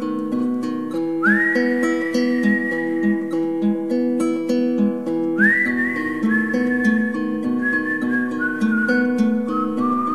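Whistled melody over fingerpicked acoustic guitar. The whistle twice slides up into a long high note, about a second in and again about five seconds in, while the guitar keeps up a steady picked pattern.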